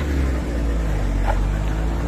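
Diesel engine of a dump truck running steadily, a low even drone.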